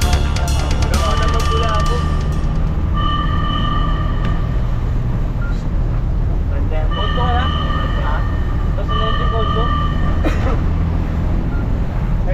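Fire truck engine running, heard from inside the cab, while a warning horn sounds in repeated blasts of about a second each, roughly every two seconds. Background music fades out in the first couple of seconds.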